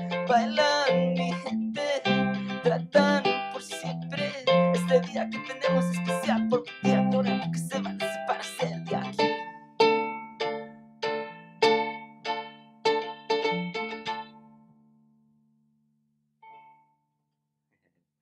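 Clean electric guitar strumming chords over a stepping bass line, then slowing to single ringing strums about nine seconds in that fade out a few seconds later as the song ends.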